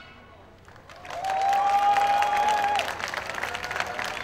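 Audience clapping and cheering as a song ends, rising out of a short lull about a second in, with one long high held call over the clapping.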